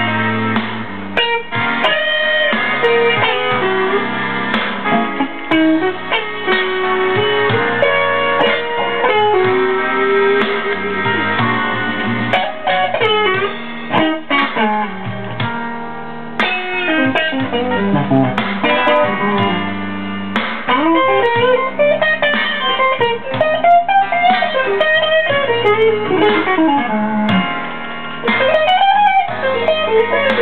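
A 1979 Fender Stratocaster played through the clean channel of a Mesa Boogie Lone Star Special amp: a blues lead of single-note lines, with string bends rising and falling in pitch, more of them in the second half.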